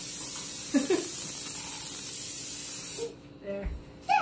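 Aerosol can of butter-flavoured cooking spray hissing steadily as it coats a glass baking pan, cutting off about three seconds in.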